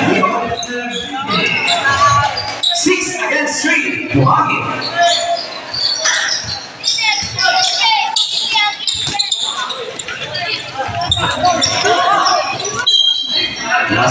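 A basketball bouncing on a hard court during live play, the strikes echoing in a large covered hall, under a near-continuous mix of voices.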